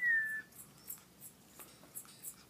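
An African grey parrot gives one short, clear whistle that dips slightly in pitch, followed by several faint high clicks spaced about a third of a second apart.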